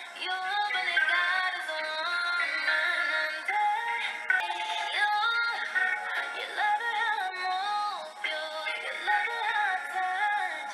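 A woman singing a pop song, one melodic line of held and gliding notes that carries on without a break.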